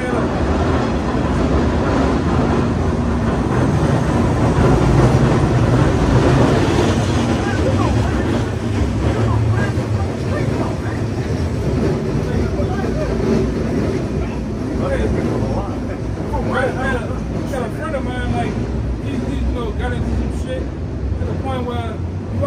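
Low rumble of a streetcar passing along the street, swelling a few seconds in and easing off after about ten seconds, over street traffic, with faint voices near the end.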